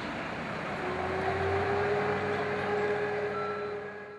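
A fire engine's engine running at the scene: a low hum with a steady whine that comes in about a second in and climbs slightly, over a background of street noise. It fades near the end.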